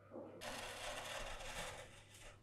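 Flat metal scraper pushed along a frozen ice cream sheet on a steel cold plate, rolling it up: a dense, steady scraping rasp that starts suddenly about half a second in and stops just before the end.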